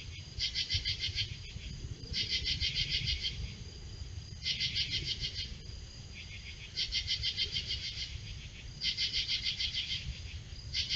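Night-calling insects chirping in rapidly pulsed bursts, each about a second long, five times at roughly two-second intervals.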